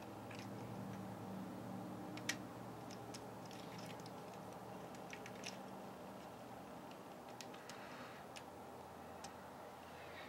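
Faint, scattered clicks and taps of plastic Transformers figure parts as the small Legends Groove is handled and popped onto the Unite Warriors Defensor's chest, the clearest click about two seconds in. A faint low hum sits behind through the first half.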